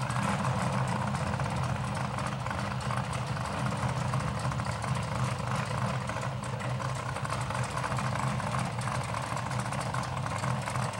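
Drag-racing cars idling at the starting line: a steady low engine note that holds throughout, with no revving.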